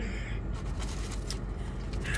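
Takeout food packaging being rummaged through: a few short rustles and scrapes over the steady hum of a car's air conditioning.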